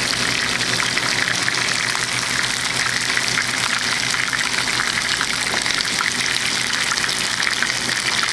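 Chicken pieces shallow-frying in hot oil in a pan: a steady, dense sizzle with constant fine crackling as the skin browns.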